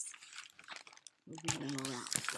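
Rustling, scraping handling noise as the camera is swung away from the picture book, followed, about one and a half seconds in, by a woman's voice holding a steady hum.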